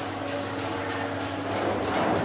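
Steady electrical machine hum with a few held tones, from the running HJ 1118 antioxidation annealing furnace. No strikes or clicks stand out.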